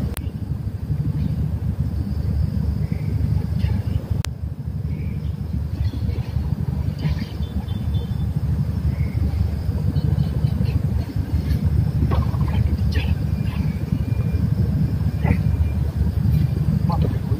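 A steady low rumble like a running engine, with faint voices in the background and two sharp clicks, one just after the start and one about four seconds in.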